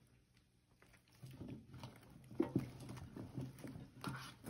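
Handling noise from about a second in: cloth rustling and small irregular knocks as a wire roasting rack carrying a roast duck is gripped with towels and shifted in a stainless steel roasting pan. The sharpest knock comes about midway.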